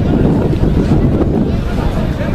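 Wind buffeting the microphone: a loud, steady low rumble, with distant voices faint beneath it.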